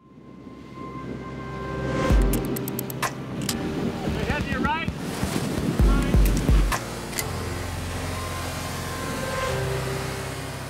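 Produced intro soundtrack: a steady bed with deep low hits, a quick run of sharp clicks and a cluster of short rising electronic chirps in the middle, settling into a steadier bed for the last few seconds.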